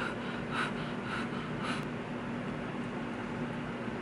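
Four quick puffs of breath about half a second apart, over the steady hum of an electric fan.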